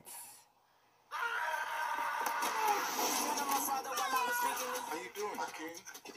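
Movie trailer audio playing at a lower level: a voice over a background bed. It comes in after a sudden drop to dead silence of about half a second near the start.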